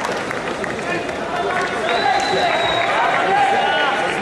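Many people talking at once, indistinct crowd chatter in a large sports hall. A thin, high steady tone sounds for about a second near the middle.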